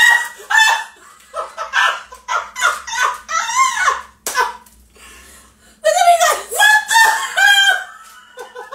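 Women laughing hard and loudly, in high-pitched peals that stop and start, with a few words mixed in.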